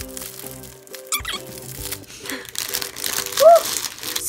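Clear plastic packaging crinkling as a squishy toy is pulled out of its bag, under steady background music. A brief voice-like sound comes near the end.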